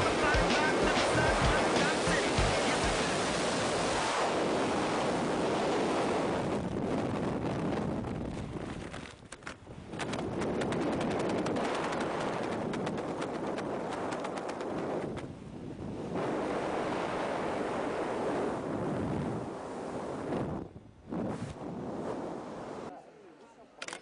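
Wind rushing and buffeting over a skydiver's helmet-camera microphone during the descent, a loud, rough noise with a few brief dips, dropping away near the end.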